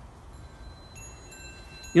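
Faint high ringing tones, several starting one after another about a second in, over a low background hum.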